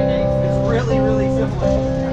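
Amplified electric guitar playing held chords that change about once a second.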